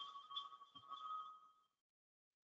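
A faint steady electronic tone at two pitches, one lower and one higher, that dies away about one and a half seconds in and leaves dead silence. A soft low thump comes partway through.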